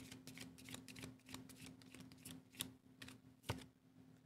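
Tarot cards being shuffled and handled by hand: a faint, irregular run of soft card flicks and ticks, with one sharper snap about three and a half seconds in. A faint steady hum runs underneath.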